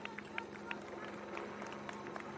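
Marathon runners' footfalls on the asphalt road, heard as short, sharp irregular taps, with scattered voices and clapping from roadside spectators over a steady low engine hum.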